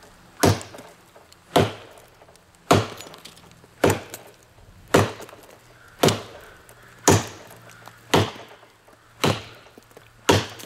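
Heavy, thick-bladed Schrade bolo machete chopping into a standing tree trunk: nine steady blows, about one a second, each a sharp chunk of steel biting into wood.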